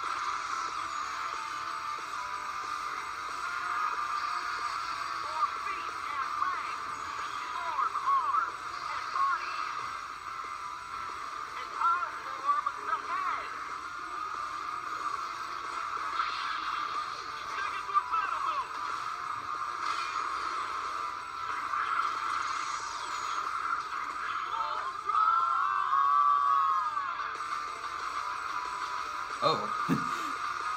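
Soundtrack of an animated fight video played back on a computer: music with voices, thin and narrow-sounding.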